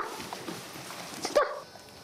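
Soft rustling of a camera brushing against a house cat's fur, with one short, sharp voice-like call about a second and a half in.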